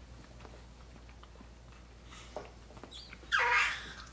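Mostly quiet room while a man chews, with a few faint clicks. Near the end comes a brief voice-like sound.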